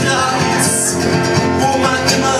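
Acoustic guitar strummed steadily in a passage of the song with no words.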